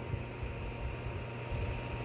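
Arctic Air personal evaporative air cooler's small fan running with a steady airy hiss and a faint steady tone, with uneven low rumbling from the unit being handled as it is lifted.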